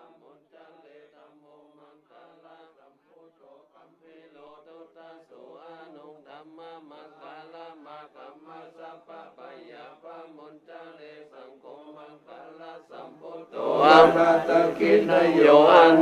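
A group of Buddhist monks chanting Pali protective verses (paritta) in unison. The chant is faint at first, grows a little louder a few seconds in, and turns suddenly much louder near the end.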